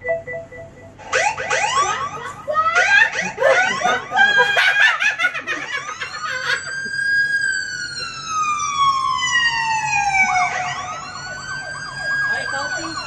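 Siren sounding loudly, first in fast repeated whoops, then a long slow wail that falls in pitch over about four seconds and starts rising again near the end.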